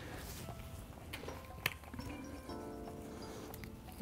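Quiet background music playing low, with a couple of sharp light clicks about a second and a half in from handling the fiberglass header wrap and metal header.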